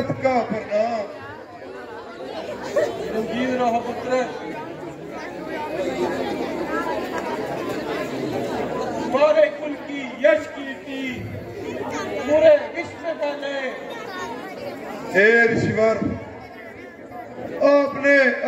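Speech: a man talking, with the chatter of other voices around it.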